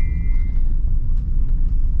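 Steady low rumble of a car driving along a road, heard from inside its cabin.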